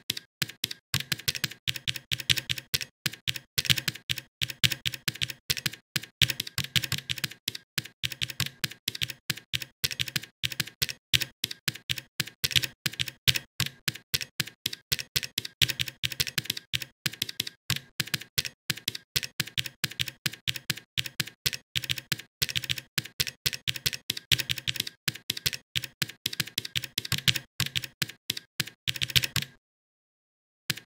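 Rapid typing on a computer keyboard: a steady stream of keystroke clicks in runs with short pauses, cutting out briefly just before the end.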